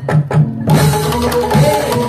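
Live Javanese dance-accompaniment percussion music, with a kendang barrel drum playing a quick run of strokes. The high jingling drops out for about the first half-second, then returns along with steady pitched tones.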